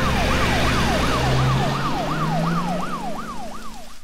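Ambulance siren in a fast yelp, its pitch rising and falling about three times a second over a loud hiss.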